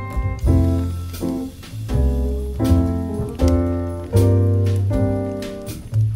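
Instrumental Christmas jazz: piano-like chords over a low bass line, a new chord struck about every second and fading away.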